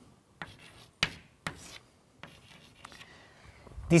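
Chalk writing on a blackboard: several sharp taps, each followed by a short scratchy stroke, as letters and an underline are chalked, fainter in the second half. A man's voice starts at the very end.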